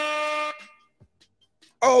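Air horn sound effect, the kind played for hype, holding one steady note and cutting off about half a second in. Then quiet until a man's voice says "Oh" near the end.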